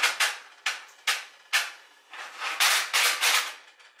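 Gas stove burner's spark igniter clicking in repeated snapping bursts, about two a second, with a denser run near the end: the burner is not lighting.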